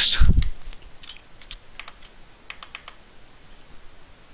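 Computer keyboard and mouse clicking: a dozen or so light, scattered clicks spread over about two seconds.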